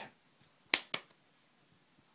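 Two sharp finger snaps about a fifth of a second apart, the first louder.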